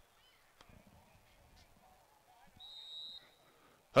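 Faint field-side ambience with one short, steady, high whistle blast a little past halfway in, about half a second long, as from a referee's whistle restarting play.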